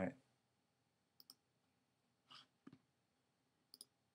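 Faint, sparse computer pointer clicks in near silence: a quick double click about a second in, a single click near the middle and another quick double click near the end.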